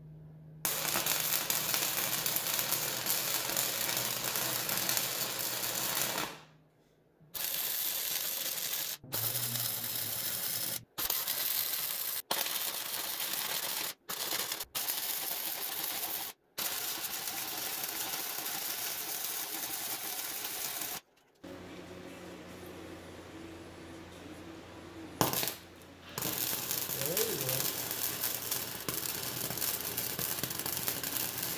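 Flux-core wire-feed welding arc crackling on 3/16-inch steel angle iron, in a series of welds of a few seconds each broken by short pauses. A little past two-thirds through there is a quieter stretch with a low hum before the welding resumes.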